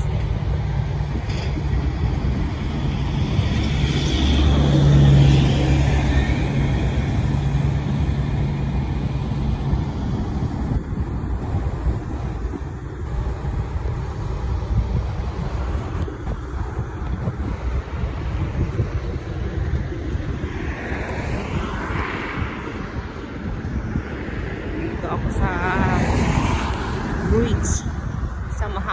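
Wind rumbling on the microphone over road traffic, with a vehicle's engine hum passing during the first ten seconds or so.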